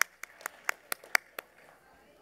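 One person clapping close to a microphone: about seven sharp claps, roughly four a second, stopping about a second and a half in.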